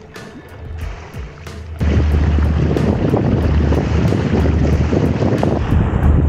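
Wind buffeting the microphone and water rushing past a boat under way, over background music. The noise jumps sharply louder about two seconds in and stays loud.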